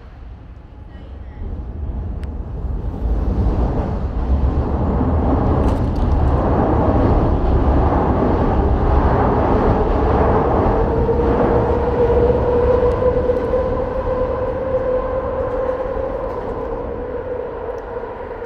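Market-Frankford Line elevated train passing overhead on its steel structure: a loud rumble that builds over the first few seconds, with a steady whine that rises slightly in pitch, easing off a little near the end.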